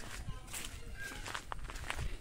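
Footsteps on a dirt path, soft irregular thumps and scuffs, with faint voices in the background.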